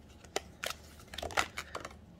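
A deck of tarot cards being shuffled by hand, giving sharp flicks and snaps of card edges: two single snaps, then a quicker run of them in the second half.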